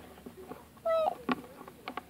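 A short high-pitched cry about a second in, followed by light clicks and taps of plastic toy ponies being handled.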